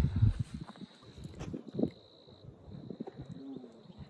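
Quiet open-air ambience with a little low wind rumble at first and a faint, short bird call with a falling pitch near the end.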